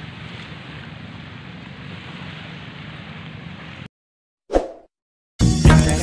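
Steady low outdoor background noise with no speech for about four seconds, then it cuts out to silence. A short whoosh follows, and a channel intro's music with a strong beat starts loudly near the end.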